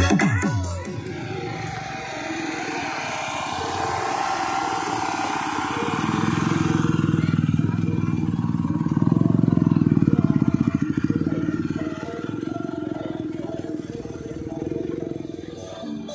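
Motor scooter engines running close by, loudest in a low, rapid pulsing from about six to twelve seconds in, over crowd voices and music from loudspeakers.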